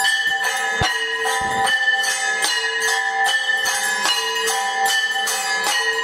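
Temple bells rung rapidly and continuously for the arti, about four strikes a second, several bell tones ringing over one another. A low thud sounds just under a second in.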